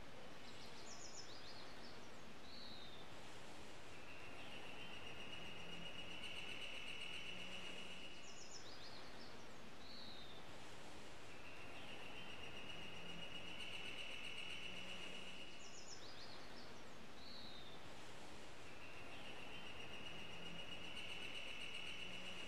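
Quiet outdoor ambience with steady background hiss and a songbird repeating the same phrase three times, about every seven seconds: a few quick high chirps, a short falling note, then a long, steady trill lasting two to three seconds.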